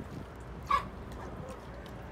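A dog gives a single short, sharp bark a little under a second in.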